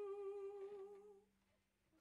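A singer's final held note, hummed with a slow vibrato, fading away a little over a second in.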